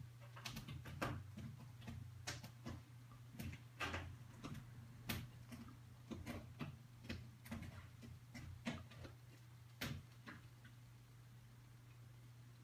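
Faint, irregular small clicks and taps, a dozen or more spread through, over a steady low hum.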